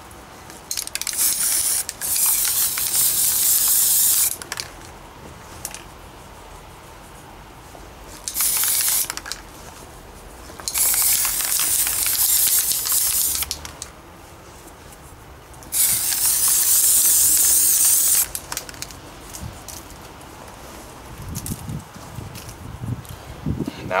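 Aerosol spray-paint can hissing in five bursts with pauses between, the longest lasting two to three seconds, as paint is sprayed onto a steel helmet.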